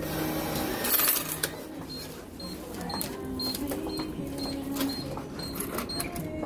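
Self-checkout cash machine paying out change and a receipt: a burst of whirring and clinking in the first second or so, then a short high beep repeating about twice a second while the change waits to be collected.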